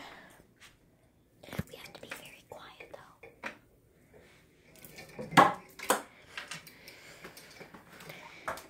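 Faint whispering and handheld rustling with scattered clicks and knocks, two sharp knocks a little past halfway.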